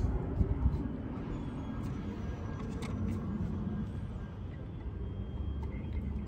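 A few faint clicks of plastic wiring-harness connectors being handled and plugged into a DSP unit, over a steady low rumble.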